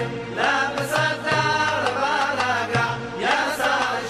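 Mizrahi Jewish music: a wavering, ornamented melody line over a steady bass with light percussion strokes.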